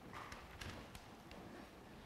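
A pen writing on paper: a few faint taps and scratches in the first second, and one more tap a little later as the writing is finished.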